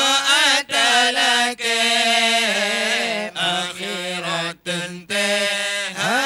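A man's solo voice singing a Meudike (Acehnese dike devotional chant) into a microphone, in long ornamented phrases with a wavering pitch. The phrases break off briefly for breath about five times.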